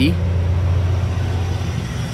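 Steady low hum of an idling vehicle engine, unchanging throughout.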